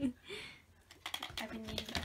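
A quick, irregular run of light clicks and taps, starting about a second in, from a patterned pouch and a paper gift bag being handled while a present is unwrapped.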